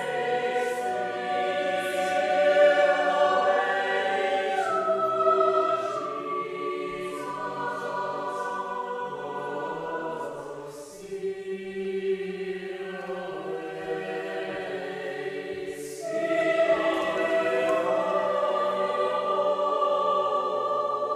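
Choir singing slow, sustained phrases, with a new, louder phrase starting about 16 seconds in.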